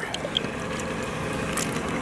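A thin stream of liquid bait dye poured from a bottle into a plastic tub, a steady trickle over a low background hum.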